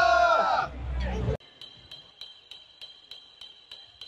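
A long, held shout from a group of people that falls away about half a second in, with loud low rumble behind it. About a second and a half in the sound cuts off suddenly to a quiet background holding faint, regular ticks about four a second and a faint high whine.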